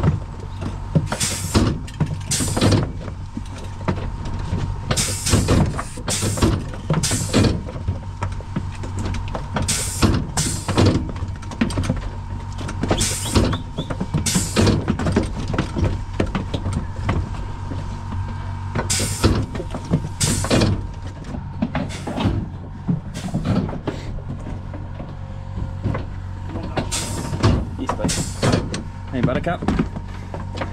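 Repeated clanks and rattles of a metal sheep-handling crate and its gates as hoggets are run through for scanning, over a steady low hum.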